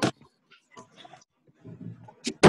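Open-microphone noise on a video call: a sharp knock right at the start, then faint scattered clicks and rustling, and a short low, rough noise near the end.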